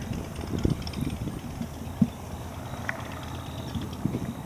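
Wind rumbling on the microphone over choppy water lapping against a kayak, with a few soft thumps, the sharpest about two seconds in.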